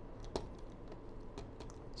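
A few faint clicks and taps of a stylus on a pen tablet during handwriting. The sharpest tap comes about a third of a second in, over a low steady background.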